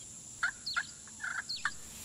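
A quick run of about six short, bird-like chirping calls over a faint steady hiss, starting about half a second in.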